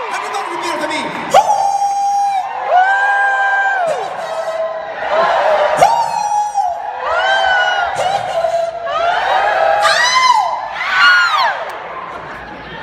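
A man's high, drawn-out whoops through a stage microphone, about six of them, each swelling, holding and then dropping away. A crowd cheers and yells back between the calls.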